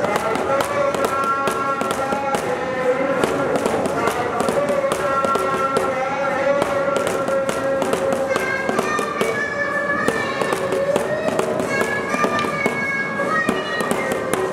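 Devotional singing in long, slowly bending held notes over a dense, irregular crackle of sharp clicks.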